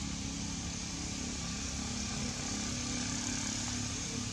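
A steady low engine hum, holding an even pitch, over a constant background hiss.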